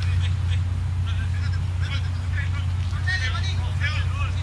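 Pitch-side ambience at a soccer match: faint, scattered voices calling out on the field over a steady low hum.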